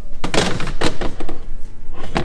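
A glass baking dish being put into a refrigerator: a run of knocks and scrapes as the dish is handled and set on a fridge shelf.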